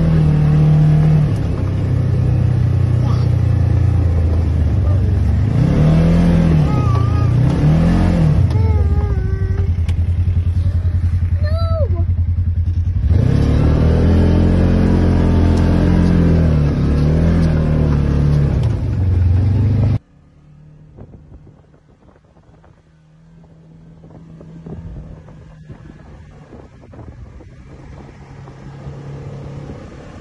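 Side-by-side UTV engine driving on a snowy trail, its pitch rising and falling as the throttle opens and eases. About twenty seconds in the sound drops suddenly to a much quieter, steady engine hum that slowly grows louder.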